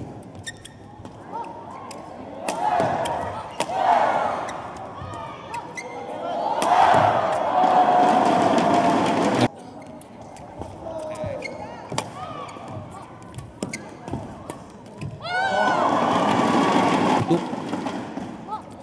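Badminton rally: sharp clicks of rackets striking the shuttlecock again and again, with two loud stretches of shouting and cheering voices, the longer one from about two and a half to nine and a half seconds in.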